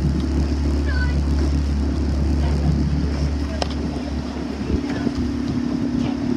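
Outboard motor of a following launch running steadily at cruising speed, with wind and water noise over the microphone and a single sharp knock about halfway through.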